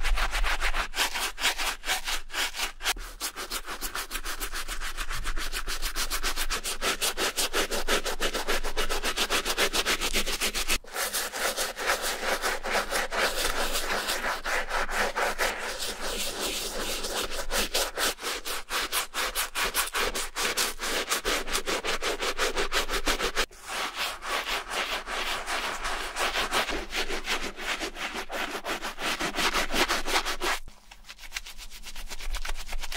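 Stiff-bristled Reshoevn8r All Purpose shoe brush scrubbing a suede sneaker upper and rubber sole with foamy shoe-cleaning shampoo, in quick back-and-forth strokes, briefly pausing twice.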